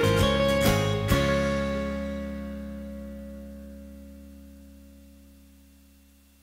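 Guitar ending a country song: a few last strums in the first second, then a final chord rings out and fades away slowly.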